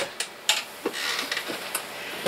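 A few light knocks and clicks of hard plastic being handled as a plastic road barricade lamp is picked up from the floor, the clearest knock about half a second in.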